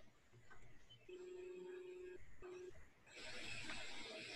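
Faint electronic beep coming over a video-call line: one steady tone lasting about a second, then a short repeat of the same pitch. About three seconds in, a steady hiss of line noise comes up.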